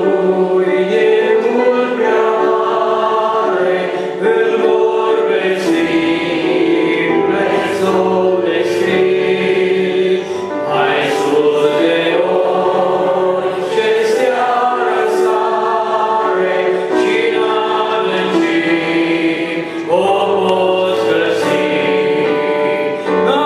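A man singing a Christian song into a microphone over instrumental accompaniment; a deep bass line comes in about six seconds in.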